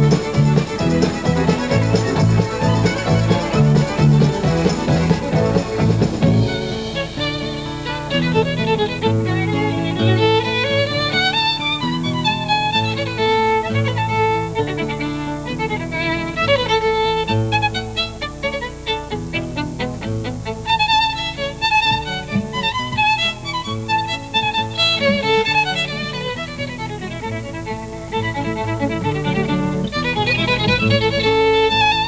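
Violins with an electric band playing a fast fiddle tune live. About six seconds in the full band drops back and a single violin plays a solo of quick runs over lighter accompaniment, including a rapid repeated figure a little past the middle.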